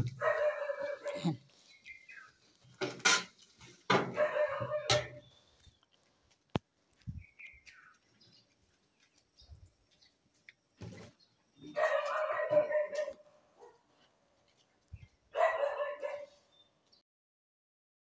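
An animal calling four times, each call about a second long, with a few short clicks in between.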